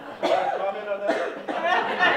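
A man laughing in a few short bursts, the first one sharp and cough-like.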